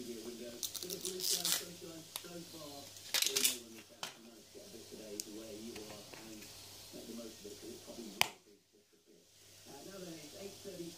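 A man's voice talking quietly throughout, with two short scratchy, rustling noises in the first few seconds. A sharp click comes about eight seconds in, followed by a brief moment of near quiet.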